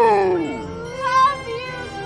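A young man's drawn-out excited cry, falling in pitch and fading out within the first second, followed by music.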